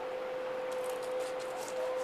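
Knife cutting into a snapper behind the head: faint crackly scraping from the blade through scales and flesh, starting about a second in, over a steady hum.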